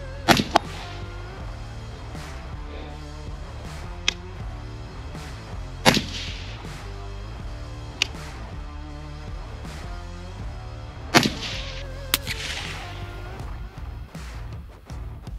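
Three shots from an 11.5-inch short-barrelled rifle fitted with a Gemtech HALO suppressor, each a sharp crack, about five and a half seconds apart, with a smaller crack just after the first. Background music runs underneath.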